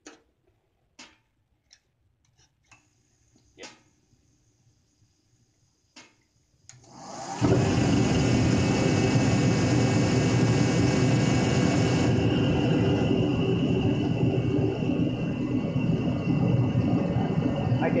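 A few light clicks, then about seven seconds in a torpedo heater's motor and fan spin up and its burner fires. It quickly settles into a loud, steady running noise with a motor hum. The burner is running on preheated waste motor oil at a high pump pressure, set high so the flame sensor does not shut the unit down.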